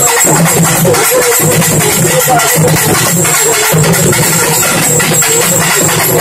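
Urumi melam drum ensemble playing: urumi hourglass drums and shoulder-slung barrel drums beaten together in a loud, dense, continuous rhythm.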